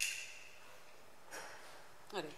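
Two short, sharp noises close to a stage microphone: a louder one right at the start that fades quickly, and a fainter one about a second and a half later, over low room tone.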